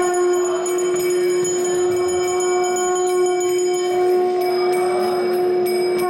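Conch shell (shankha) blown in one long, steady blast of about six seconds that cuts off near the end. Bells ring steadily behind it.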